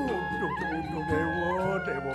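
A man singing a Balinese tembang, his voice swooping and sliding widely in pitch over steady sustained instrumental accompaniment.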